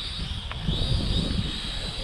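Small toy quadcopter's propellers whining steadily at a high pitch, with gusty wind rumbling on the microphone.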